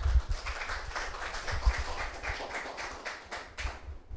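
Handheld microphone being handled and passed between speakers: low thumps and rubbing on the mic body, with faint scattered taps.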